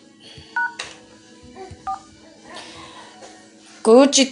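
Two short touch-tone keypad beeps on a phone conference line, about half a second and two seconds in, over a faint steady line hum. A voice cuts in near the end.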